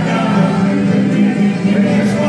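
Live bluegrass band playing, with banjo, mandolin, fiddle and acoustic guitars under several voices singing together in harmony.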